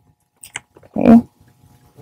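Wrapping paper crinkling briefly as it is folded around a gift box, followed about a second in by a single spoken 'okay'.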